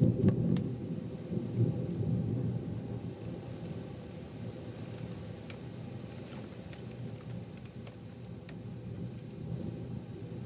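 Thunder rumbling loudly for the first two or three seconds and then fading into a steady wash of rain and wind, with scattered sharp ticks of raindrops hitting close by.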